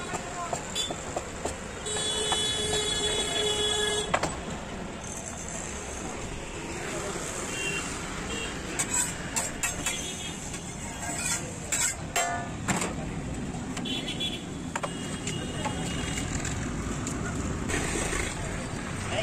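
Roadside street noise: traffic running steadily, with a vehicle horn sounding for about two seconds near the start. Scattered clicks and snatches of voices come through later on.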